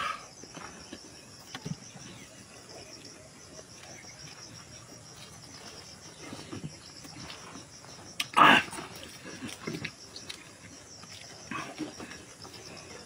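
Close-up eating sounds: a man tearing and chewing boiled cow's-head meat by hand and mouth, with small smacking clicks, and one short, loud burst of mouth noise about eight and a half seconds in. Insects chirp steadily in the background.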